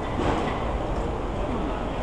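Steady city street noise: a low rumble of traffic with faint voices.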